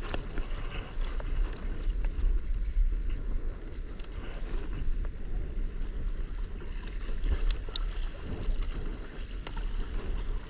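Wind rumbling on the microphone over water lapping and splashing against a kayak hull on choppy open water, with scattered small splashes.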